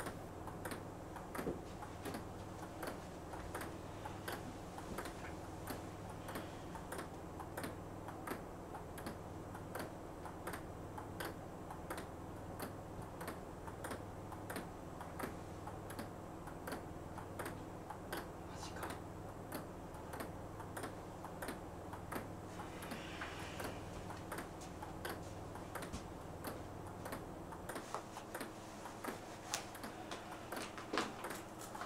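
Table tennis rally: a ping-pong ball clicking sharply against paddles and table about twice a second, going on without a break. It plays over a low steady hum that stops near the end.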